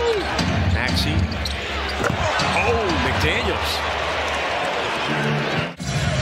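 A basketball being dribbled on a hardwood court, with short sneaker squeaks over a steady arena crowd noise. The sound cuts out briefly near the end.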